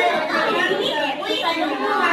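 Speech only: several voices talking at once, a busy chatter with no other sound standing out.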